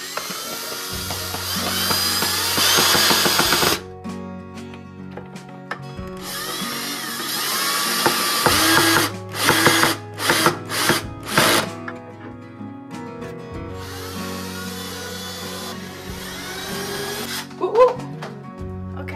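Ryobi cordless drill driving screws through a steel shelf bracket into a wooden board: three longer runs of the motor and a quick string of four short bursts in the middle. Background music plays underneath.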